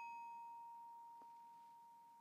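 The B-flat bar of a student bell kit (glockenspiel) ringing out after a single light mallet tap: one pure high tone, faint and slowly fading, its brighter overtones dying away within the first second.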